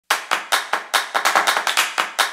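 Hand claps in a quick, somewhat uneven rhythm, about five a second, coming closer together partway through.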